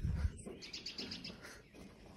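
Faint bird chirping: a quick run of short, high notes, several a second, that fades away. There is a low thump on the microphone right at the start.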